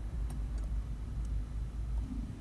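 A car's engine running at low revs, heard from inside the cabin as a steady low rumble while the car creeps backwards, with a few faint ticks.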